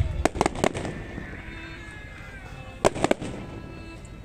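Fireworks exploding: a few sharp cracks in quick succession at the start, following a deep boom, then another short cluster of cracks about three seconds in.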